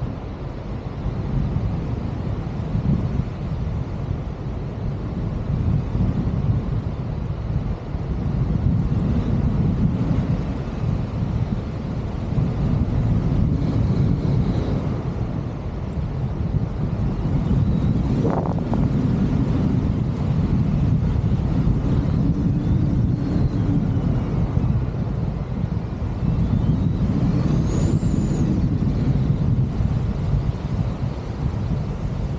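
Wind buffeting the microphone of a camera carried on a tandem paraglider in flight: a low rumbling rush of air that swells and eases every few seconds.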